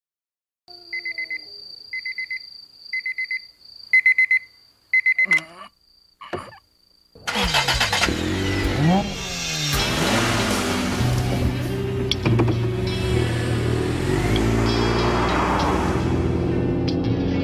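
Five short electronic beeps about a second apart over a steady high tone, with a couple of falling swoops. From about seven seconds in, racing car engines rise and fall in pitch over a loud music track.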